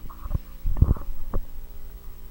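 Handling noise on a handheld microphone: three short low thumps, the middle one the loudest.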